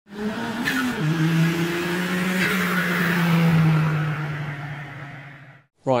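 A car engine running at high, steady revs with tyre noise; its pitch drops about a second in, holds, then fades out near the end.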